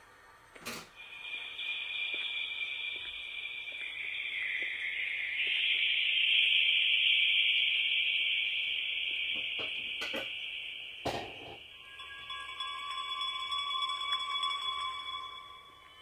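A high, hissing electronic drone that swells toward the middle and then eases off, with a thin steady tone joining it about three-quarters of the way through. A few sharp clicks come near the start and around ten seconds in.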